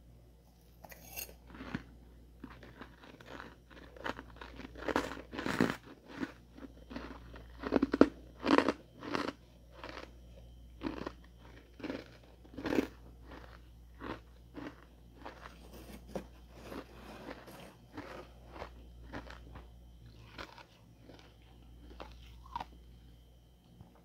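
Ice being bitten and chewed: a long run of crisp crunches, loudest about eight and thirteen seconds in, over a faint steady hum.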